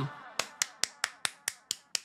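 A sharp click repeated evenly, about four to five times a second, each one fainter than the last like a fading echo, as the music drops out.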